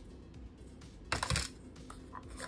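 A short clatter of hands handling a plastic phone charger and its cardboard box about a second in, over soft background music.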